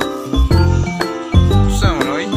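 Music with a heavy bass beat and sustained high notes.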